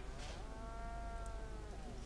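A cow mooing once: a single faint, long call that rises a little and falls away.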